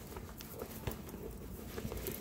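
Soft rustling with scattered light clicks as a black suede handbag is lifted and turned over by hand.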